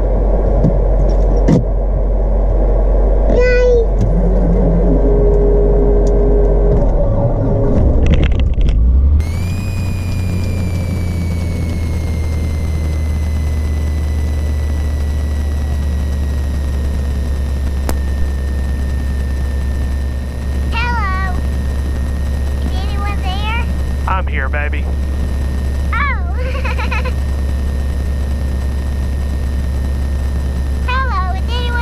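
Piper Saratoga's six-cylinder piston engine idling just after start, a loud low drone. About nine seconds in the sound turns steadier and quieter, with a high whine of intercom interference that glides slightly down and then holds.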